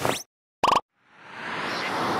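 Motion-graphics sound effects: a quick rising pop right at the start, a short pitched blip about two-thirds of a second in, then a whoosh that swells up from about a second in.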